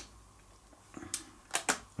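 A few light clicks as a plastic digital kitchen scale is handled, about a second in and again near the end, in an otherwise quiet room.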